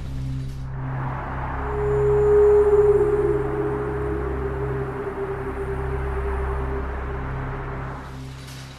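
Background film score: a low sustained drone with a long held note entering about a second and a half in and carrying on.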